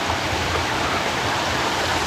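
River water flowing over rocks and down a small cascade into a pool: a steady, even rush.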